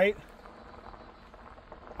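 A voice trails off at the start, then faint, steady, featureless outdoor background noise with no distinct event.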